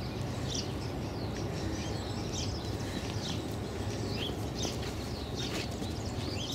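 Wild songbirds chirping, with many short calls scattered throughout, over a steady low background rumble.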